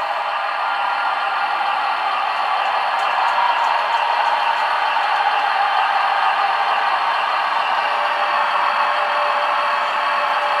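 HO-scale model train running on the layout under digital command control: a steady whir with no breaks.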